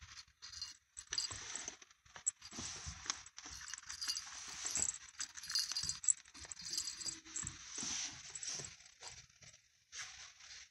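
A kitten scuffling with a small toy rat on a cloth lap close to the phone: continuous rustling and scratching of fabric, broken by many irregular small clicks and taps.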